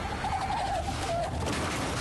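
Racing superbike going past at speed, engine and rushing noise throughout. Its smoking rear tyre gives a brief wavering squeal in the first second or so, as the wheel locks under hard braking.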